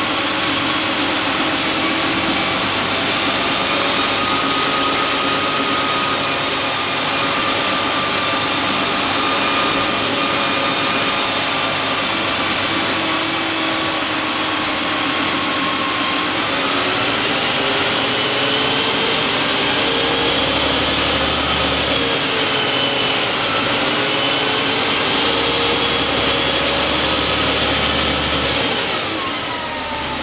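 Inside a Karosa B 961 city bus under way: a steady diesel engine and driveline drone with road noise, and whining tones that rise and fall as the bus changes speed. Near the end the whine falls in pitch and the noise eases as the bus slows.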